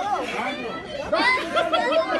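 Several people talking and shouting over one another.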